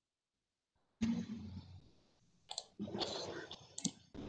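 A few sharp clicks and brief rustling noise from a video-call microphone, starting suddenly after dead silence about a second in.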